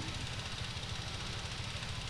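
Steady low rumble and hiss of background noise, with no distinct event.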